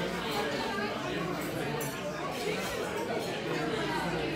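Indistinct background chatter of several people talking at once, with no single voice standing out.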